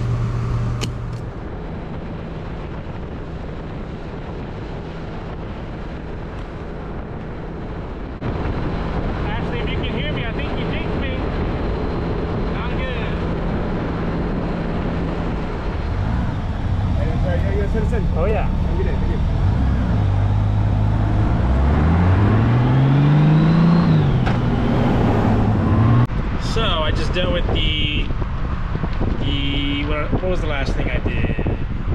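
Honda Gold Wing F6B motorcycle's flat-six engine running under way with road and wind noise. The engine pitch rises as it accelerates about two-thirds of the way through.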